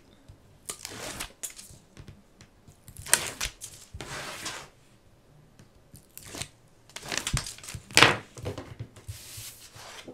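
Release liners being peeled off strips of double-sided tape on a clipboard board: a series of short tearing peels with quiet gaps between them, the loudest near the end.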